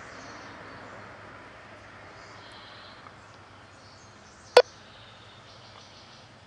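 Faint outdoor background with distant birds chirping while the scanner channel is idle. About four and a half seconds in, one short sharp pop comes from the scanner's speaker.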